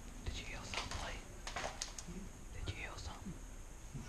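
A person whispering two short phrases, with a few sharp clicks in between.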